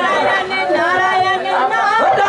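Several voices talking over one another, a mix of chatter with no single clear speaker.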